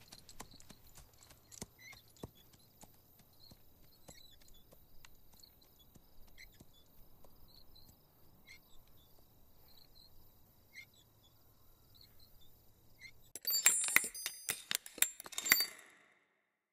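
Faint outdoor ambience of sparse small clicks and short chirps over a low steady hum. About thirteen seconds in, a much louder electronic logo sting of sharp clicks and bright high tones plays, then stops abruptly.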